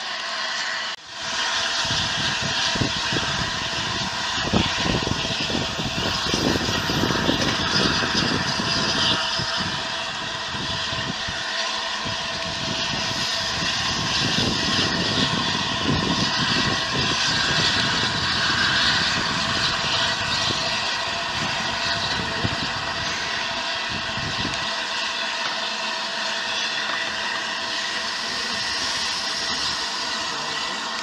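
LNER A3 Pacific steam locomotive Flying Scotsman moving slowly on the line, steam hissing steadily from its open cylinder drain cocks. Under the hiss the engine and wheels rumble, and this dies away a few seconds before the end while the hiss goes on.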